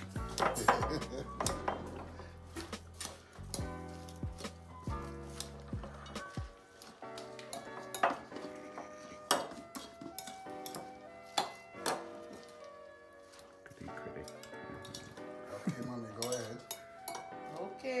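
Metal utensils clinking and scraping against a glass mixing bowl of shredded-cabbage coleslaw, in irregular sharp clinks, over background music that has a heavy bass line for the first six seconds or so.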